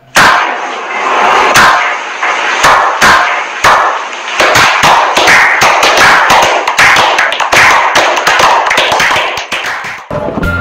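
A small group clapping: a few single, separate claps at first, then from about halfway the claps come thick and fast over a wash of applause.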